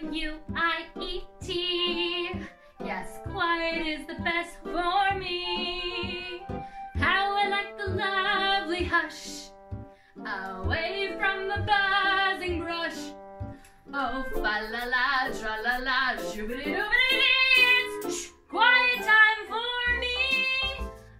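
A woman singing a musical-theatre song with wide vibrato on held notes, over a backing track with instrumental accompaniment and a regular low beat.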